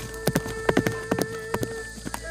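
A horse galloping on a dirt path, its hoofbeats coming in quick, uneven clusters, over held tones of background music.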